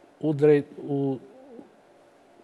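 A man's voice making two short, held hesitation sounds, an 'uh' and then a hum, between phrases of reading aloud.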